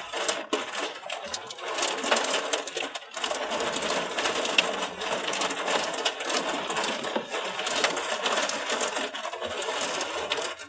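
Hailstones hitting a car's roof and windscreen, heard from inside the car: a dense, continuous clatter of many small impacts.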